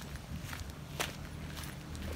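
Footsteps on a dirt and gravel road, a few soft steps with the clearest about a second in. A low, steady engine hum comes in partway through and keeps going.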